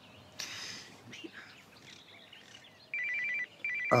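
A phone ringing: an electronic trill of two rapidly alternating high tones, starting about three seconds in and repeating in short bursts.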